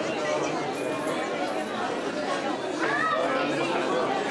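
Several people talking at once, overlapping chatter of guests in a large reverberant hall.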